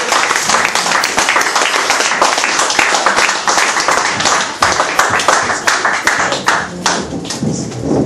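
Audience applause, many hands clapping together, thinning out near the end.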